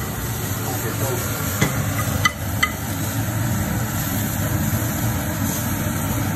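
Sliced mushrooms sautéing in a non-stick frying pan over a steady drone from the kitchen exhaust hood running on full. A spoon knocks against the pan three times in quick succession, between about one and a half and two and a half seconds in.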